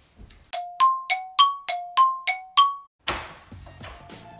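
A bell-like chime of eight quick ringing notes, alternating between a lower and a higher pitch, about one note every third of a second, as the front door is opened. A brief noise follows near the end.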